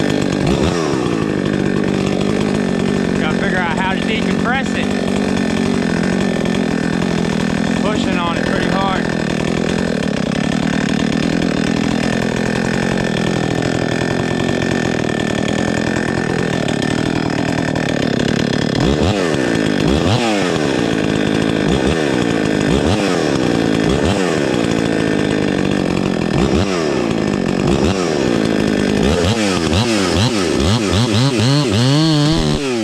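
Husqvarna 266XP two-stroke chainsaw running continuously at varying throttle. It is revved up several times early on, holds a steadier note through the middle, and from a little past halfway is revved up and let back down about once a second.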